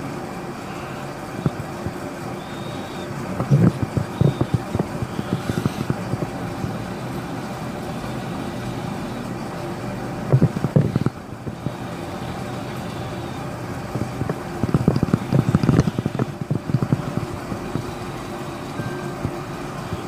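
A steady background hum, broken three times by bursts of clicks and rubbing from fingers handling a smartphone close to the microphone: about four seconds in, around eleven seconds, and longest between fifteen and sixteen seconds.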